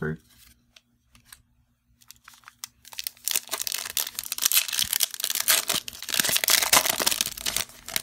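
A 2020 Bowman Chrome trading-card pack wrapper being crinkled and torn open. A dense crackle starts about three seconds in, after a near-quiet stretch with a few light clicks.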